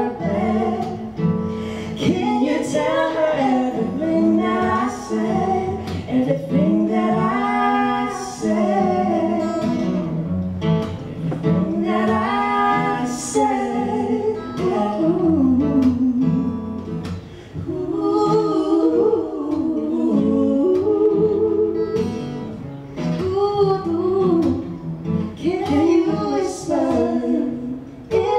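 Live acoustic duet: a woman and a man singing long, gliding notes, accompanied by a strummed acoustic guitar.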